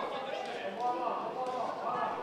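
Voices talking in a large hall, several at once, with a few light knocks underneath.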